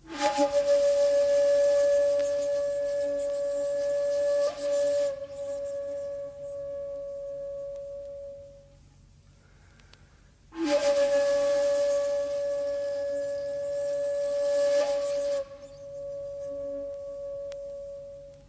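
Shakuhachi playing two long held notes on the same pitch, the second starting about halfway through. Each note opens loud and very breathy, and the rushing breath noise drops away after about five seconds, leaving a softer, purer tone that fades out.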